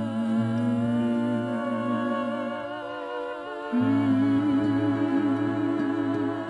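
A male voice holds long wordless notes with vibrato over sustained nylon-string classical guitar chords. The voice and bass drop out briefly about three seconds in, then come back with the voice on a higher held note.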